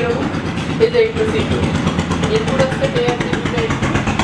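A man's voice speaking, over a steady engine-like rumble.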